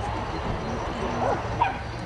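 A dog yipping a couple of times in the second half, short high rising yips, over faint distant voices and a steady low hum.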